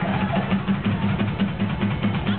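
Live drumming on two drum kits together: a fast, steady run of drum strokes and cymbals.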